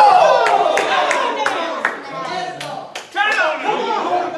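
Excited speaking voices with about five sharp handclaps in the first two seconds.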